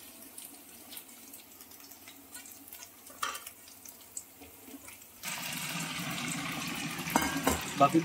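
Paneer cubes frying in hot oil in a steel kadai. A steady sizzle starts suddenly about five seconds in, after a quiet stretch with a few faint clicks, and there are a couple of knocks near the end.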